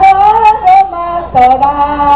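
High voices singing through a loudspeaker system, a short run of held notes with a brief break about 1.3 s in, then one long held note.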